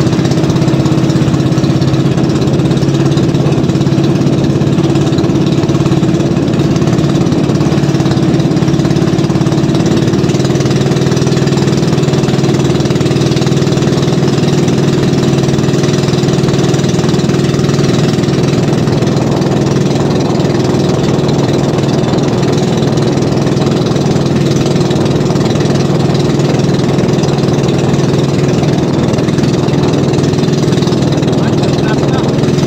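Small outrigger fishing boat's engine running steadily at an even speed with the boat under way, a constant hum with no change in pitch.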